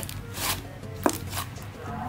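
Thick, creamy slime being squeezed and pulled by hand, giving a few short squishy pops and crackles; the sharpest comes about a second in. Soft background music plays underneath.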